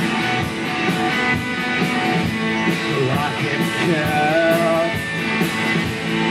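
Live rock band playing an instrumental passage: distorted electric guitar over a steady drum beat, with sliding, bent guitar notes about halfway through.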